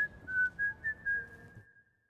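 A person whistling a few short notes of a tune, lightly stepping between two pitches and fading away. Room noise underneath cuts off to silence near the end.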